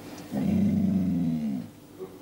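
A dog's low growl, held for about a second and dropping in pitch as it dies away.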